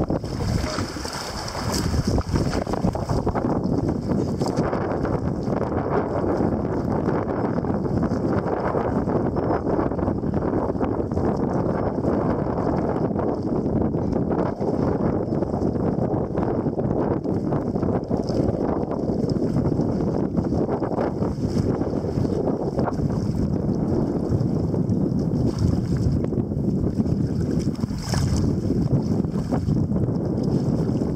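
Steady wind buffeting the microphone over water splashing and lapping against a kayak being paddled through choppy water.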